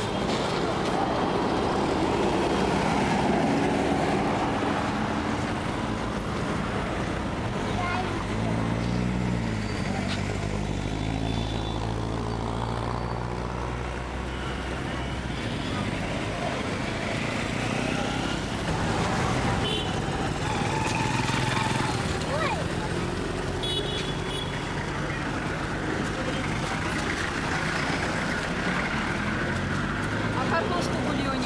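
Roadside traffic on a busy city street: a steady wash of passing cars and motorbikes, with one vehicle's engine passing close for several seconds from about eight seconds in.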